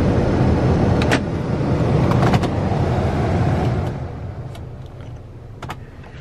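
Car cabin noise while driving slowly: a steady engine and road rumble that dies down over the last two seconds as the car comes to a stop, with a few sharp clicks along the way.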